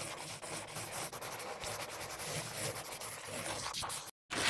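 Pencil-on-paper scribbling sound effect: rapid, continuous scratchy hatching strokes.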